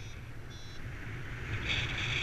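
Wind rushing over the microphone of a paraglider in flight, with a variometer's short repeated electronic beeps, the climb tone, coming in louder and more often near the end.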